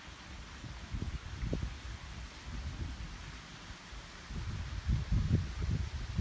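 Wind buffeting the microphone outdoors, an uneven low rumble that grows stronger in the last second or two.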